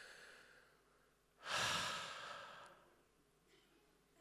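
A man's long sigh into a handheld microphone, starting about a second and a half in and fading away over about a second. It is the sigh of someone lost in wonder before he starts to pray.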